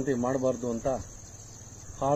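Insects chirring: one steady, unbroken high-pitched whine. A man's voice speaks over it in the first second, and the chirring carries on alone after that.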